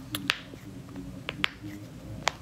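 Sharp clicks from fidgeting hands held close to the phone's microphone, in two quick pairs about a second apart.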